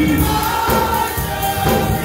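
Gospel praise team of several voices singing together over instrumental accompaniment, holding long notes.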